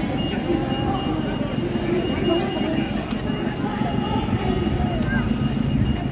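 Busy city street ambience: passers-by talking over the steady noise of traffic, with a thin, steady high-pitched tone through most of it.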